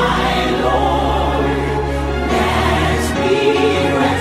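Background music: a choir singing a slow sacred song over sustained bass notes.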